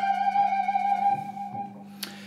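Single electric guitar note fretted high on the B string and pushed up in a wide bend just after it is picked, then held so it sings and fades out near the end.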